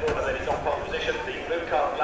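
Race commentary: a man talking over loudspeakers, with a low rumble underneath.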